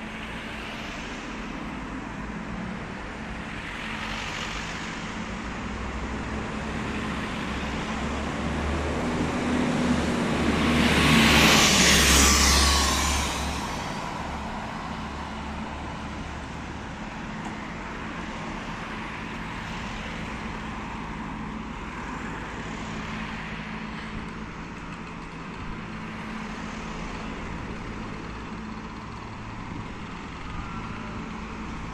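Street traffic with cars going by, one vehicle passing close: it builds up, is loudest about eleven to thirteen seconds in with a falling pitch, and fades away with a low rumble.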